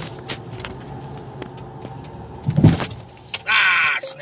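Vehicle engine running with a steady low hum. There is a heavy thump about two and a half seconds in, and a loud, high-pitched sound lasting about half a second near the end.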